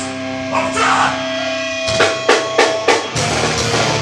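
A live metallic hardcore band: over a held, ringing tone the vocalist shouts into the microphone, then four hard drum hits land about two seconds in and the full band crashes in with distorted guitars and drums about a second later.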